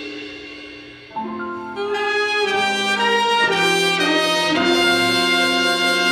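Jazz big band playing, led by the brass. A held chord dies away, then about a second in the horns come back with a run of changing chords and swell to a loud sustained chord.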